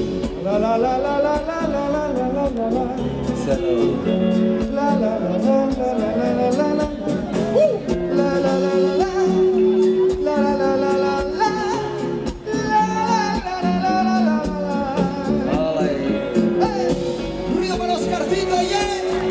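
Live band music with electric bass and percussion, and a singer improvising a melody that slides up and down over it.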